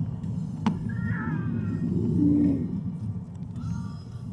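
Steady low road and engine rumble inside a moving car's cabin. A sharp click comes about two-thirds of a second in, followed by a brief high, wavering squeak and, a little after two seconds, a short low hum.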